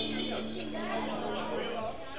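A live rockabilly band's closing chord on electric guitar and upright bass, with a last cymbal hit right at the start, held and fading out near the end. Room chatter rises under it from about half a second in.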